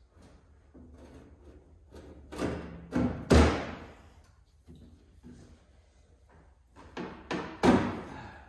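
Sheet-metal thuds and knocks as a steel replacement quarter panel is pushed and set into place against the body of a 1969 Mustang fastback. There are two groups of three, the loudest about three and a half seconds in, and another group near the end.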